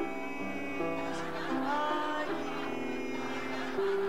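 A girl and a boy singing a Sabbath hymn together to keyboard accompaniment, in long held notes.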